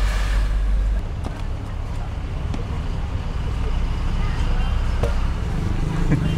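Busy street-side market ambience: a steady low rumble of traffic with indistinct background voices, and a few faint clicks.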